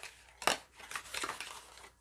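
Small objects being handled and set down on a table: a sharp knock about half a second in, followed by a second or so of rustling and scraping.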